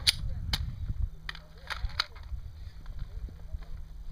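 Several sharp gunshot cracks at uneven intervals, mostly in the first half, from pistols fired elsewhere on the range, over a low rumble.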